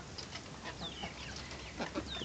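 Young chickens peeping softly in short falling notes while pecking at wet mash in a bowl, with faint taps of beaks.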